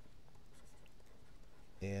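Faint scratching and light taps of a stylus writing a word on a pen tablet.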